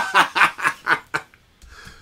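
A man laughing in a quick run of short bursts that dies away a little over a second in.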